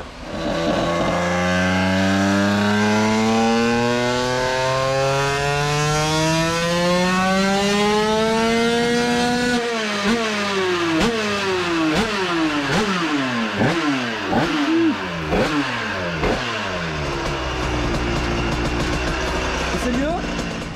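Two-stroke Derbi AM6 engine with a 100cc 2Fast kit, on a motorcycle making a full-throttle pull on a roller dyno to test ignition advance. The revs climb steadily for about nine seconds, then the throttle shuts and the pitch drops sharply. A series of short rev surges and dips follows before it settles to a steady idle near the end.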